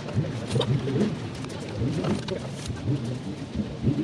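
A pigeon cooing over a low murmur of people's voices.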